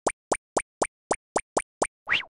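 Cartoon footstep sound effect: a quick, even series of short pitched plops, about four a second.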